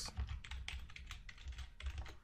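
Keystrokes on a computer keyboard: a quick, uneven run of faint key clicks as a short name is typed.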